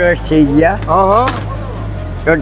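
A man's voice over a steady low hum, with a sharp click about a second and a half in.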